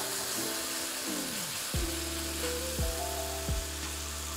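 Green curry paste and eggplant frying in an oiled pan, a steady sizzle, as coconut milk is added, with background music playing over it and a deep bass coming in a little under halfway through.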